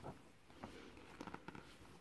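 Near silence with the faint rustle and a few soft ticks of a picture-book page being turned by hand.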